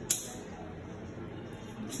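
A single sharp click just after the start, then low, steady room tone, with a fainter click near the end.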